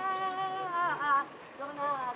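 A single voice singing a kiyari, the Japanese festival work chant, in long held, slightly wavering notes; one drawn-out phrase falls away about a second in and the next begins near the end.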